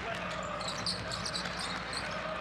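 Live basketball game sound in an arena: a steady crowd murmur with a ball being dribbled on the hardwood court and short high squeaks.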